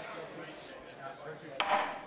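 The auctioneer's gavel strikes the rostrum once, about a second and a half in, in a single sharp knock that rings on briefly: the hammer falling to mark the yearling as sold. Before it there is only the low hum of the sale ring.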